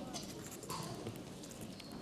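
Light footsteps and shuffling of children moving on a stage floor, a scatter of short taps, with faint children's voices.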